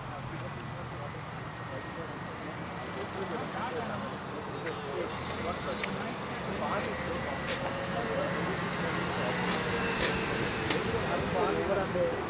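Indistinct voices over a steady background of outdoor noise and low hum, growing slightly louder toward the end.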